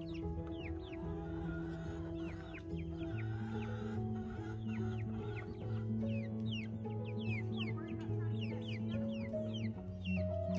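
Young chickens peeping, many short falling chirps in quick succession, over background music of sustained chords.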